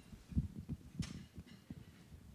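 Several dull thumps from a handheld microphone being handled, the sharpest about a second in. The microphone is malfunctioning and cutting out.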